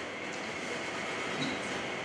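Steady, even background noise of a hall with a live sound system: room tone in a pause between spoken phrases.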